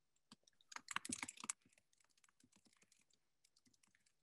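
Faint clicking and tapping, with a quick dense run of clicks about a second in, like typing on a keyboard.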